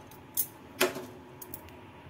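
Two light metallic knocks about half a second apart, the second louder, then a few faint ticks, as a hand handles things on a stainless-steel gas stovetop.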